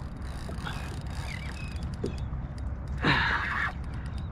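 Steady low rumble of wind and water around the kayak while a spinning reel is worked against a hooked sheepshead, with a brief rushing noise about three seconds in.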